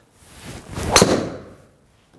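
Driver swung and striking a golf ball: a rising whoosh of the swing leads into one sharp crack of impact about a second in, which then rings away. The ball is caught toward the heel of the clubface.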